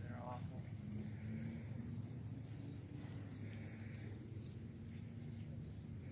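Night insects trilling steadily in one high, even tone over a low background rumble, with faint muffled voices.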